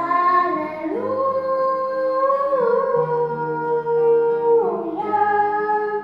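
A young girl singing a slow hymn through a microphone, holding long notes that step up and then down in pitch, with an acoustic guitar accompanying underneath.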